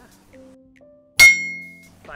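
A single sharp, bright bell-like ding about a second in, ringing briefly before it fades, over faint background music.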